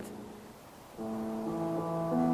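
Steinway grand piano played softly: after a quiet first second, sustained chords begin and are held.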